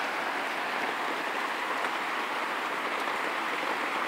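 Steady rain heard from inside a shack, an even hiss with no breaks.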